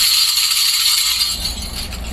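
A small object shaken by hand, making a continuous high-pitched jingling rattle.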